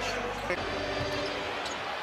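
Arena crowd murmur with a basketball being dribbled on the hardwood court.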